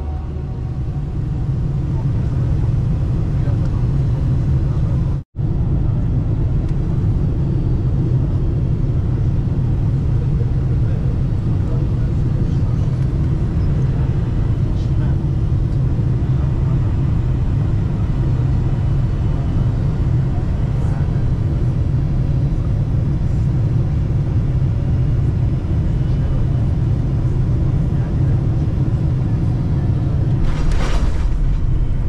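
Steady low cabin rumble of a Boeing 747-400 on final approach, heard at a window seat beside the wing: engine and airflow noise. The sound cuts out for an instant about five seconds in.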